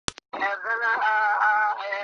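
Unaccompanied singing in the Kurdish dengbêj style: one voice holding long, wavering notes, starting just after two short clicks.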